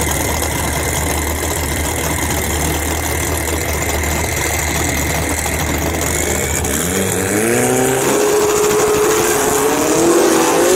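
Turbocharged Hyundai four-cylinder (4G63-type) engine in a Foxbody Mustang drag car, idling at the starting line. About seven seconds in its revs rise and then hold steady, ready for the launch.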